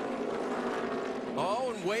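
A pack of NASCAR Xfinity Series stock cars at racing speed, the many V8 engines running together with their pitch sliding slightly lower as the field goes by. A commentator's voice comes in near the end.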